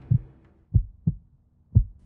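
Heartbeat sound effect: pairs of low, dull thumps (lub-dub), repeating slowly about once a second.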